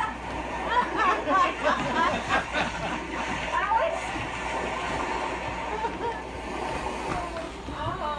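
Indistinct voices talking, with no clear words, over a steady room background.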